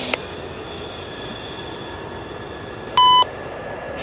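Railroad scanner radio between transmissions: a click as the previous message cuts off, then a steady hiss over the faint sound of a distant approaching freight train, and about three seconds in a short loud electronic beep as the next transmission, an automated wayside defect detector, keys up.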